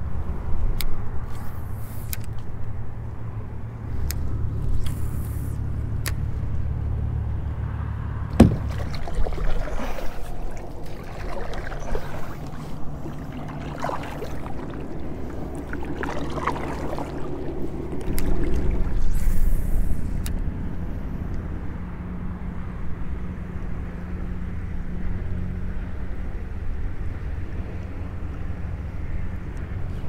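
Wind rumbling on the microphone, low and steady, with one sharp knock about eight seconds in and faint kayak paddle splashes around the middle.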